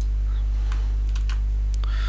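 Computer keyboard typing: several separate keystrokes, over a steady low hum.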